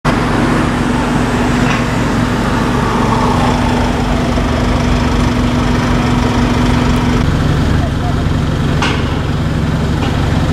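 Idling vehicle engines and street noise, with a steady hum that cuts off about seven seconds in, indistinct voices, and a short sharp sound near nine seconds.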